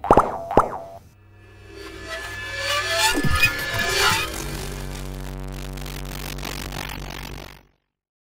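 Short musical logo sting: two quick falling plop sound effects, then rising notes that settle into a held chord, which cuts off suddenly near the end.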